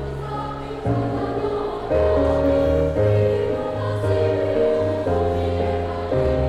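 Elementary school children's choir singing with accompaniment, long held notes changing about once a second over a low bass line.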